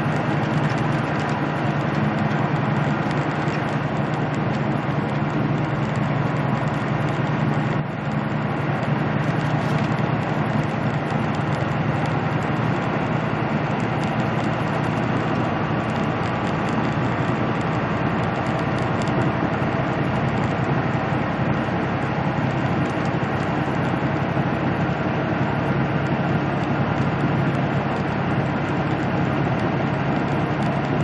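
Peterbilt semi truck cruising at highway speed, heard from inside the cab: a steady diesel engine drone under even road and tyre noise.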